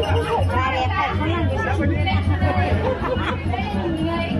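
A performer's voice speaking into a stage microphone and amplified through loudspeakers, with music playing underneath and a steady pulsing low tone.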